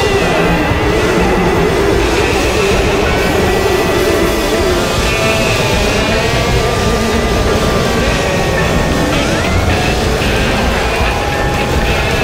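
Psychedelic rock recording in a long instrumental passage: a loud, dense wash of distorted sound with sustained droning tones. One pitch glides upward about nine seconds in.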